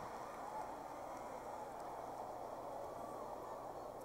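Faint, steady murmur and laughter from a large theatre audience, holding low between lines of a stand-up set.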